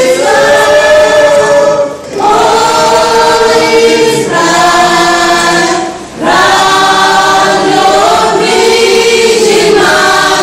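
A children's choir singing together in long held phrases, with two short breaks for breath, about two seconds in and about six seconds in.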